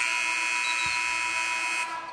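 Arena end-of-period horn sounding one long, steady blast that signals the end of the first quarter. It cuts off sharply near the end.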